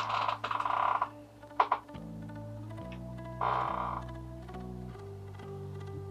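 Soft background guitar music with sustained chords that change every second or so. Over it, two short rustling bursts come at the start and midway, and a sharp click about a second and a half in, from kite string being slid under and pulled around folded cotton fabric.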